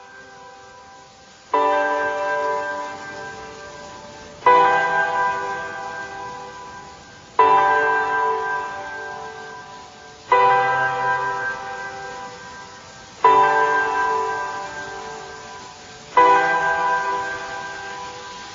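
Instrumental intro of a song without vocals: a ringing chord is struck six times, about three seconds apart, and each one fades out before the next.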